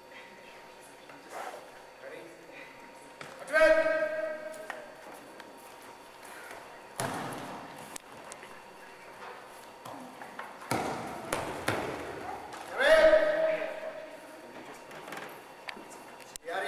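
Two long shouted calls in a large gym hall, one about three and a half seconds in and one near thirteen seconds, with thuds and scuffling of bodies and feet on the floor during a grappling bout between them, the sharpest around seven and eleven seconds.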